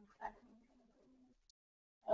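Near silence, with a faint low hum for most of the first second before it cuts out.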